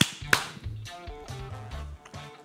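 Two sharp hand claps a third of a second apart at the start, followed by background music with a repeating bass line.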